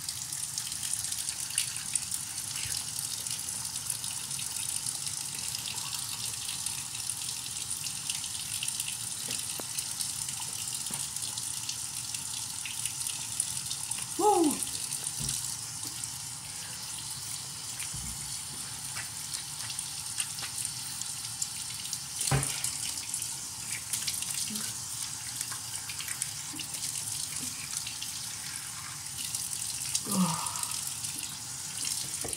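Bathroom sink faucet running steadily into the basin during tooth brushing. There is a brief vocal sound about 14 seconds in and a sharp knock about 22 seconds in.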